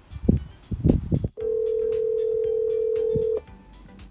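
A brief spoken 'hey', then a steady single-pitched telephone call tone held for about two seconds before cutting off.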